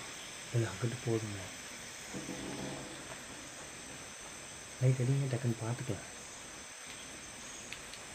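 Steady night chorus of crickets and other insects, with a person's voice speaking a few short words about half a second in and again about five seconds in.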